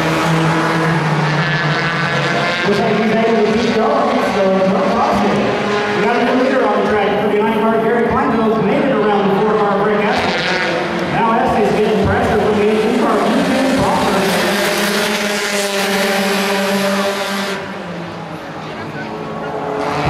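Engines of several compact stock cars racing on an oval track, their pitch rising and falling as they pass, with a brief dip in loudness near the end.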